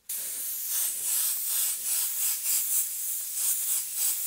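Iwata HP-CS Eclipse airbrush spraying paint: a steady hiss of air through the nozzle, its level rising and falling slightly.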